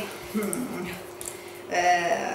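Wire whisk stirring thick chestnut-flour batter in a stainless steel bowl: soft, quiet scraping and sloshing, with a voice returning near the end.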